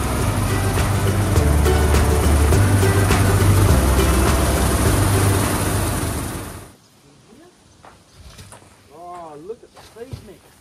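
Loud, steady machinery noise of a grain auger cart running while drums are filled with grain, under a low beat of background music; it cuts off abruptly about two-thirds of the way through. Then a much quieter stretch with a couple of short, rising-and-falling calls.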